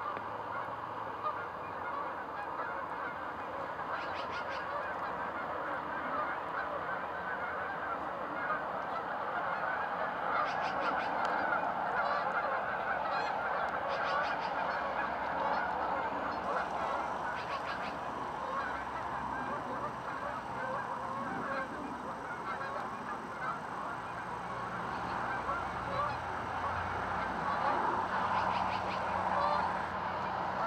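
A large flock of geese honking continuously, many calls overlapping into a steady chorus.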